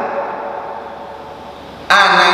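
A pause in a man's talk. The echo of his voice fades slowly in a hard-walled hall, and his speech starts again abruptly near the end.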